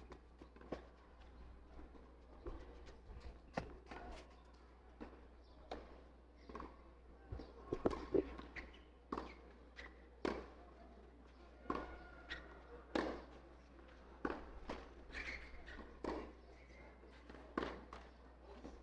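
Tennis ball bouncing and being struck by rackets on a clay court: a string of sharp, separate hits and bounces through the rally, with footsteps in the gaps.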